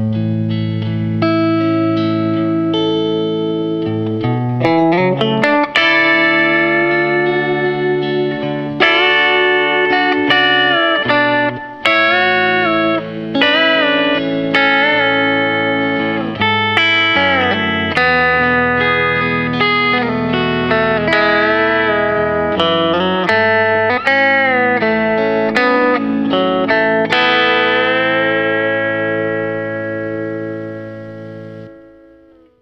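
Electric Telecaster guitar playing a slow, pedal-steel style country ballad lick in A, with string bends that glide up into notes and release back down, over a looped backing track of sustained chords.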